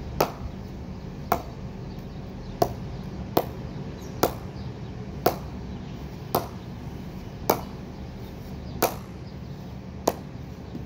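Gray-Nicolls Prestige English-willow cricket bat being knocked for a ping test: nine sharp wooden knocks at uneven intervals of about a second, each with a brief ring.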